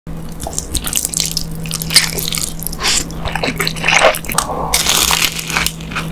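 Close-miked eating sounds: spicy fire noodles slurped and chewed, with crunchy bites in a dense, irregular run of wet and crisp noises.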